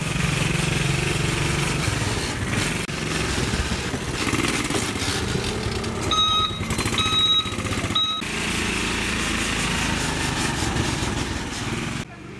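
Small engine of a motorcycle cargo tricycle running close by. About halfway through, a high steady tone cuts in for about two seconds, breaking off and returning twice.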